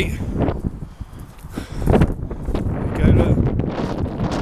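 Wind buffeting the camera microphone with a low rumble, with brief indistinct voices near the start and again about three seconds in.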